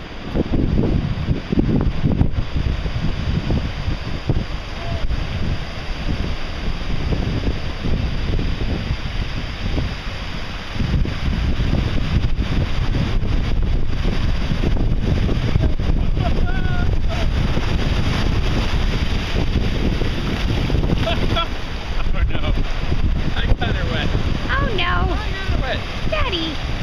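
Wind buffeting the microphone over the steady wash of small ocean waves breaking and running up the beach. The noise is loud and heaviest in the low end.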